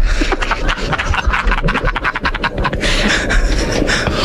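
Playback of a recording of an unexplained ocean sound first recorded in 1997: dense, crackling noise with many rapid clicks.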